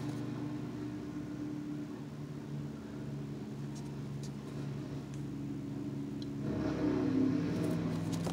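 A steady low machine hum runs throughout. Near the end a page in plastic sheet protectors is turned in a ring binder, with a louder rustle.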